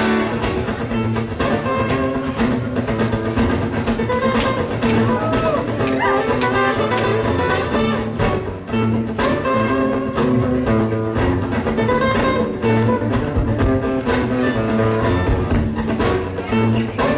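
Live guitar music: an instrumental passage of plucked guitar lines layered over a repeating looped guitar backing.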